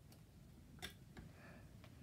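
Near silence broken by a few faint clicks of LEGO plastic pieces being handled and set down on a table, the sharpest a little under a second in.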